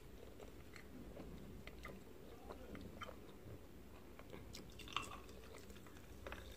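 Faint close-up chewing and biting of baked pasta with melted mozzarella, with small scattered clicks of a metal fork in a glass baking dish and one sharper click about five seconds in.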